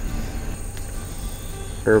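A steady, high-pitched chorus of night insects over the low rumble of a van driving slowly.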